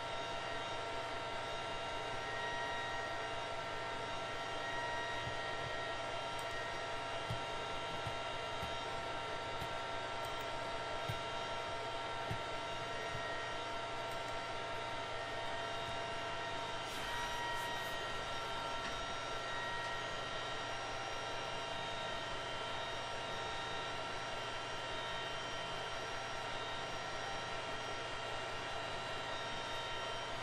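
Steady background drone and hiss with several steady high whining tones, the kind of fan and electrical room noise a desk microphone picks up beside a running computer.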